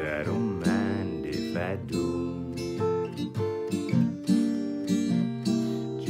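Acoustic guitar with a capo, strummed in a steady rhythm through a country ballad's chord changes.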